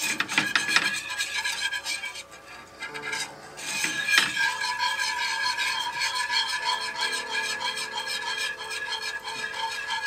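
Wire whisk scraping and rubbing around a skillet in quick repeated strokes, stirring a roux thinned with chicken stock. The strokes ease off briefly about two seconds in, then carry on steadily.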